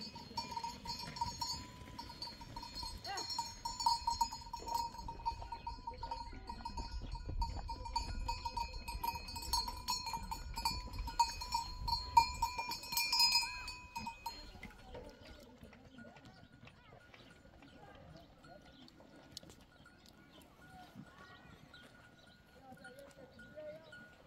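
Bells on a herd of goats ringing continuously as the herd moves, several bells sounding at once over a low rumble. About fourteen seconds in the bells stop and the sound drops to faint scattered clicks.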